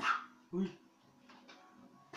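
Two short, sharp yelps about half a second apart, the first higher and falling in pitch, the second lower.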